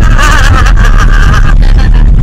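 Loud, constant rumble of a car driving, heard from inside the cabin and overloading the microphone.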